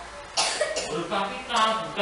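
Indistinct voices in a classroom: a short, sharp burst of noise about half a second in, then a voice speaking.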